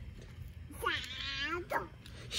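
A cat meowing once, a drawn-out call of about a second that bends down in pitch.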